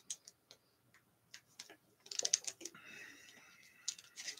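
Faint scattered clicks and handling noises from a plastic drink bottle being lifted and drunk from, with a denser cluster of clicks about halfway through.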